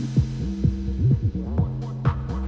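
Electronic dance music from a DJ set in a breakdown. The kick drum and hi-hats drop out and the sound goes dull, leaving a low synth bassline whose notes slide down in pitch over steady low tones. The percussion comes back in near the end.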